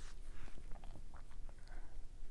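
Faint room tone: a low steady hum with a few small, scattered clicks.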